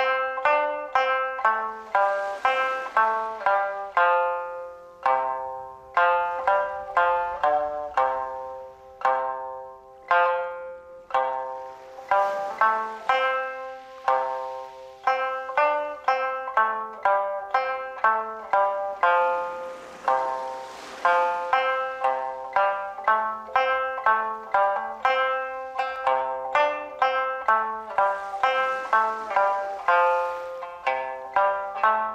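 Okinawan sanshin, the three-stringed snakeskin-covered lute, played solo: a steady stream of plucked notes, each dying away quickly, with one note struck again and again between the melody notes and a few short pauses between phrases.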